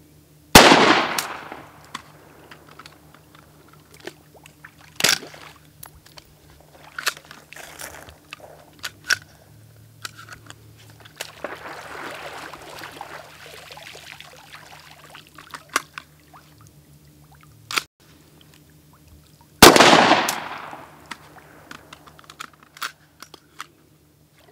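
Robinson Armament XCR rifle firing: a loud shot with a long echo about half a second in and another near the end, with a sharper, smaller crack about five seconds in and small clicks of the action being handled between them. In the middle the rifle is swished through the water, a splashing wash lasting a few seconds. The rifle is mud-fouled and freshly rinsed, its bolt cycling slowly.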